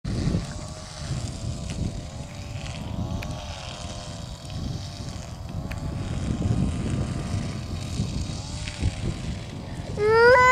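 A steady engine drone whose pitch wavers up and down about once a second, over a low rumble of wind on the microphone.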